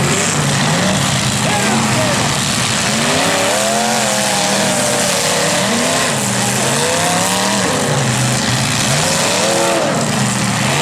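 Several 1980s demolition-derby cars' engines revving up and down over and over as they drive and ram on a dirt arena, loud and continuous.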